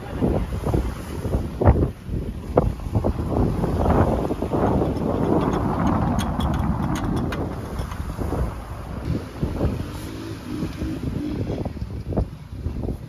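Wind gusting on the microphone, with a run of light clicks and knocks around the middle as a wheel and tyre is worked onto a 4WD's hub.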